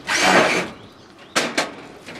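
A cordless driver runs in a short burst of about half a second, driving a screw to fix a metal mailbox to a corrugated steel wall. It is followed by two sharp knocks.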